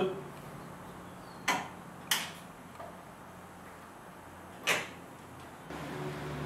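Sharp single clicks of a car's headlight relay as the headlights are switched on and off, three of them about one and a half, two and four and a half seconds in, over a low steady hum.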